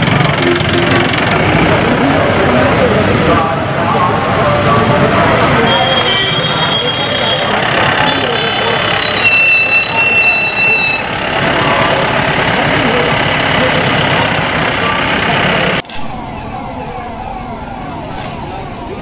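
Busy street noise: many voices talking at once and vehicle engines, with a flat high tone held for a second or two, twice near the middle. Near the end the sound drops suddenly to a quieter background of voices and movement.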